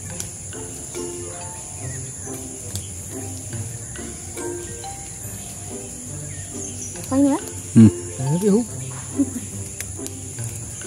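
A steady, high-pitched chorus of insects chirring in the trees, running without a break. Low background notes go on underneath, and a wavering voice-like sound rises briefly about seven to nine seconds in, the loudest part.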